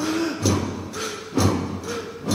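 Heavy dull thuds repeating evenly, a little under one a second, with a faint wavering pitched tone between them.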